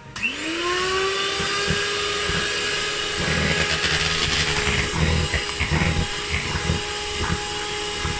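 Frigidaire electric hand mixer switched on and beating cake batter in a bowl. Its motor whine rises to speed within the first half second, then runs steadily, with irregular low knocks from about three seconds in.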